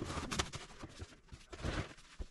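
Plastic bottles, jugs and a cardboard box knocking and rustling as they are set back into a wooden cabinet under a kitchen sink, with a run of short bumps.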